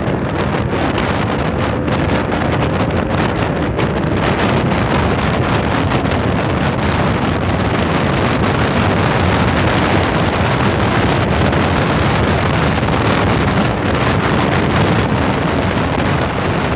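Steady wind rush on the microphone over a KTM Duke 125's single-cylinder engine, ridden at a steady cruise of about 68 km/h.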